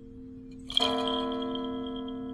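A church bell tolling slowly: the ringing of the previous stroke dies away, then a new stroke lands about a second in and rings on with a deep, lingering hum. Strokes come roughly two and a half seconds apart.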